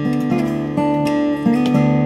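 2020 Casimi C2S steel-string acoustic guitar, African blackwood with a Moonspruce top, played fingerstyle. Plucked melody notes ring over a sustained bass, with a new note struck about every half second.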